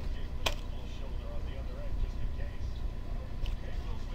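White plastic end cap being worked out of a cardboard mailing tube: one sharp click about half a second in, then a few faint scrapes and ticks.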